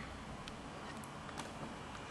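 Quiet room tone with a few faint, short clicks.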